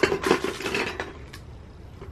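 Rustling and clicking handling noise, busiest in the first second, with one sharp click just after, then quieter.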